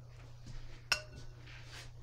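A single light clink with a short ring about a second in, as a paintbrush is tapped against hard painting gear, then a soft swish. A steady low hum runs underneath.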